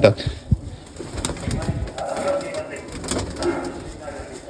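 Domestic pigeons cooing in a coop, with a few short clicks from the flock.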